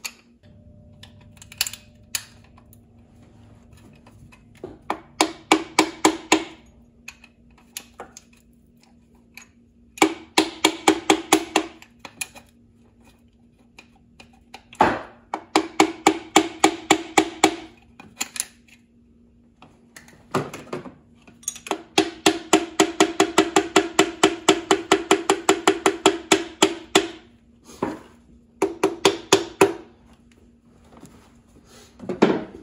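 Piston being tapped down through a ring compressor into its cylinder bore with the end of a wooden hammer handle. The quick light knocks come in several runs of about seven a second, with pauses between, and the longest run comes in the second half.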